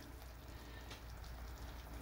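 Faint, steady sizzle of chicken pieces cooking in their juices in a pan.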